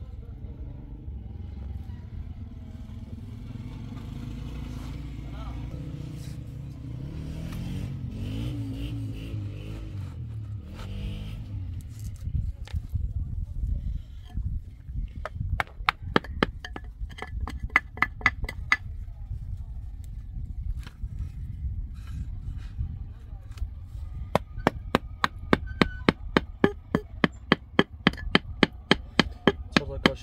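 Rapid, even taps of a small hammer setting pieces of broken ceramic tile into fresh mortar, about three to four taps a second, in a short run past the middle and a longer run near the end. A low steady rumble fills the first half.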